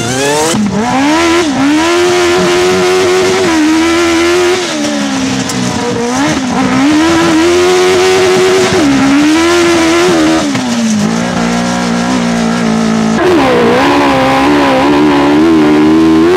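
Autocross race car engine heard from onboard, its note climbing and dropping again and again as the driver accelerates, lifts and shifts gears. The engine sound changes abruptly about three-quarters of the way through, where a different car takes over.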